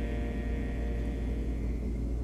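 A steady low rumble, with a faint thin high tone held over it.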